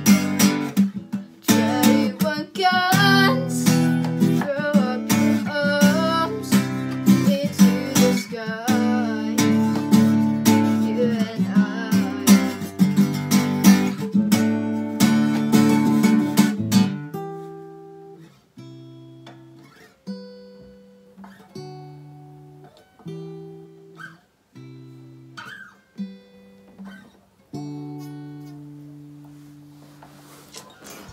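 Acoustic guitar strummed hard and fast in chords for about the first seventeen seconds, then played softly as single chords left to ring and die away, roughly one every second or two, to the close of the song.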